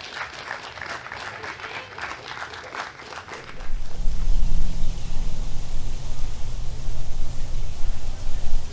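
Audience applauding and clapping for about three and a half seconds, then the applause gives way to a louder, steady low deep sound.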